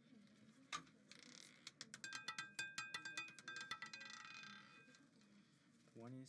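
Faint clatter of a roulette ball on a spinning wheel: a single click about a second in, then a quick run of ticks with a light ringing as it bounces across the frets and pockets, dying away near the end as the ball settles.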